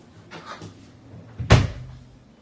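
A single loud thump about one and a half seconds in, with a short low ring after it.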